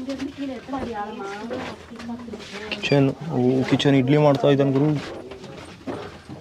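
A man's voice, low-pitched, with long drawn-out vowels held almost level, in two stretches of about two seconds each.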